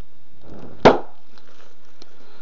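A brief rustle, then one sharp crack about a second in.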